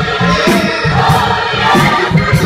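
Gospel choir singing with instrumental accompaniment, a driving bass line pulsing underneath the voices.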